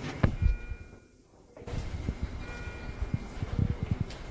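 Room sound around a blood-purification machine being primed: faint steady tones and irregular low knocks. The sound drops almost to silence for about half a second, about a second in.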